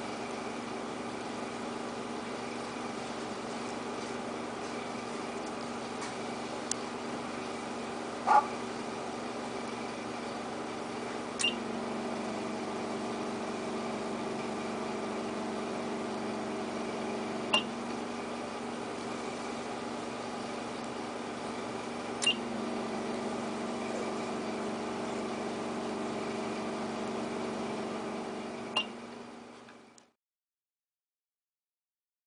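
Epoxy die bonder (West Bond 7200CR) running with a steady hum of several tones, with a sharp click about every five or six seconds, five clicks in all, as it cycles through stamping and placing dies; the hum grows heavier after some of the clicks. One louder short blip comes about eight seconds in.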